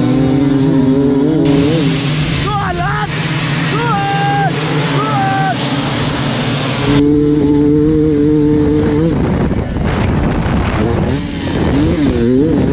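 Enduro dirt bike engines at a race start: throttle blipped in short rising and falling revs, then a pack of bikes revving hard and pulling away, with a steadier held engine note from about seven seconds in.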